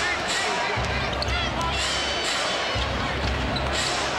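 Basketball arena ambience: a steady hubbub of crowd chatter with a ball bouncing on the hardwood court and short high sneaker squeaks, over a low rumble that comes and goes.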